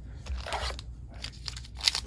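A foil booster pack wrapper crinkling as it is pulled from the box and handled, with a sharper crackle near the end as the top of the pack is torn open.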